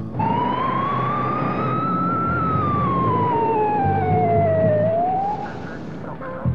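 Fire engine's wailing siren: one slow rise and fall in pitch, which starts climbing again near the end and then cuts off.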